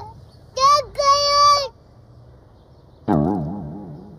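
A young child crying, two long high-pitched wails about half a second in. Near the end a lower, wavering sound comes in and fades away.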